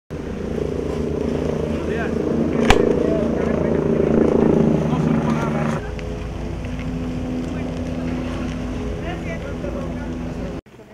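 An engine running steadily with a low hum, with faint voices in the background. There is one sharp knock a little under three seconds in, and the hum changes abruptly just before six seconds in.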